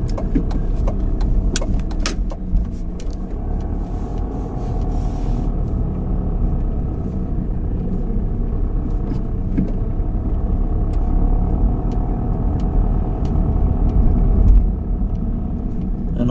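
Car driving slowly through city streets, heard from inside the cabin: a steady low engine and road rumble, with a few sharp clicks in the first couple of seconds.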